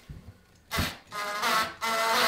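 Cordless drill-driver driving a wood screw into a pine door frame in short trigger pulls: a brief spin about two-thirds of a second in, then a steadier motor whine from just after a second, with a short break just before the end.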